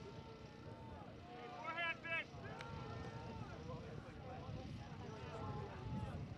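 Players on the field talking and calling to one another, faint and distant over a low steady rumble, with two short loud high-pitched shouts about two seconds in.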